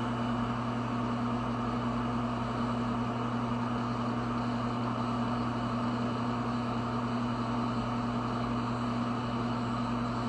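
A steady low machine hum over a constant rushing noise, unchanging in level.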